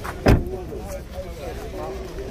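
A car door shut once with a single sharp thump about a third of a second in, over the murmur of voices nearby.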